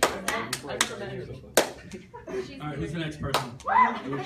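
Scattered hand claps from a small audience, thinning to a few lone claps, with one sharp clap about a second and a half in, over low voices.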